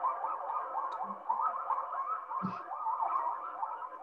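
A group of young eastern coyote pups howling together, many wavering, rising-and-falling calls overlapping.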